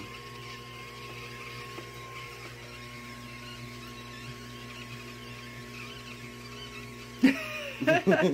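A steady low electrical hum from a kitchen appliance, with a loud burst of voice about seven seconds in.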